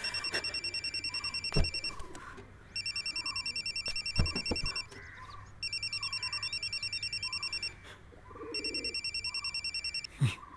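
A phone ringing with an electronic trilling ringtone: four rings of about two seconds each, separated by short pauses. A couple of soft thuds fall between the rings.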